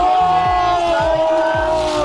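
A voice drawing out one long vowel, "aaah", for about two seconds at a steady pitch that sags a little before it breaks off.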